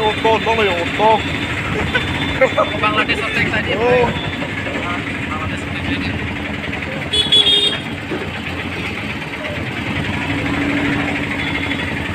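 Steady vehicle engine and busy street traffic noise heard while riding through the road, with voices in the first few seconds and one short vehicle horn toot about seven seconds in.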